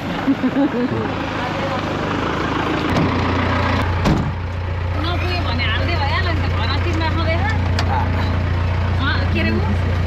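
A vehicle's engine running at a steady low idle, heard from inside the cabin, setting in about three seconds in. A thud comes about a second later, and voices talk over the engine.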